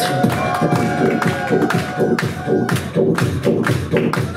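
Human beatboxing through a handheld microphone and PA: a steady beat of mouth-made percussion hits with a held, sung tone laid over it that bends in pitch during the first couple of seconds.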